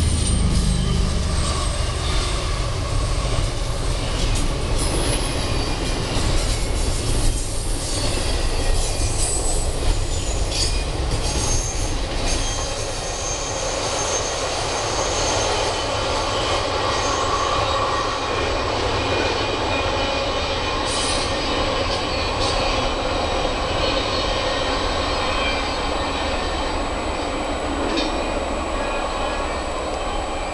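Double-stack container cars of a freight train rolling by at speed: a steady rush of wheels on rail, with clanks and wheel squeal on the curve. A heavy low rumble dies away in the first second, and the noise holds on as the end of the train draws away.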